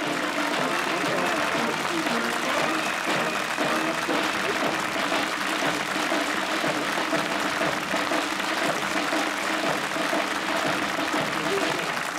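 Steady applause from a crowd, with music playing underneath.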